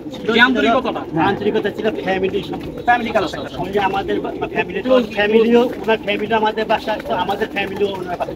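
Domestic pigeons cooing steadily in the lofts, under men talking in Bengali; the talk is the loudest thing throughout.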